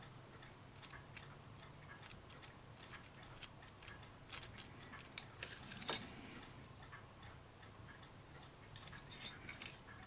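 Faint, irregular clicks and taps of small plastic model parts and metal tweezers as a plastic gun barrel is worked onto its shaft in a model turret, with the loudest clicks about five to six seconds in. The barrel is a tight fit on the shaft.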